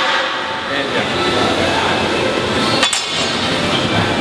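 Loaded barbell put down on the floor, its plates landing with a single sharp metal clank about three seconds in, over steady gym background noise.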